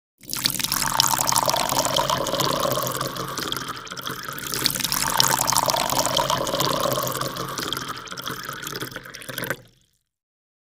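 Rushing, splashing water sound effect. It swells twice and cuts off shortly before the end.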